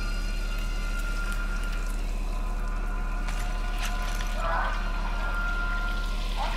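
Quiet, steady hum with several faint held tones from a TV drama's soundtrack, and a short soft sound about four and a half seconds in.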